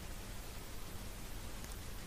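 Faint steady hiss with a low hum underneath: the room tone and noise floor of a voice-over recording, with no distinct sound events.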